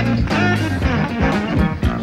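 Live funk band playing: a lead electric guitar picks notes that bend in pitch over a steady bass line and a regular drum beat.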